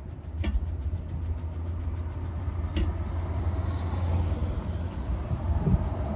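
A vehicle engine running close by makes a steady low rumble that sets in about half a second in and grows louder. Beneath it a horsehair brush buffs a leather shoe, with two sharp clicks, one near the start and one about three seconds in.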